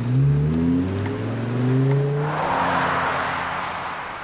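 Volvo estate car's engine accelerating as the car pulls away, its pitch climbing steadily for about two seconds. It then gives way to a broad rushing noise that slowly fades.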